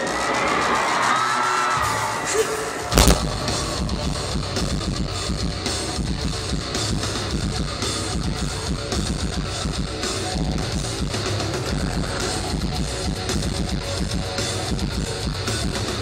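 Heavy metal band playing live at full volume, heard from the crowd: distorted electric guitars and drums. A lighter passage with gliding tones gives way to a sharp hit about three seconds in, after which the whole band plays steadily.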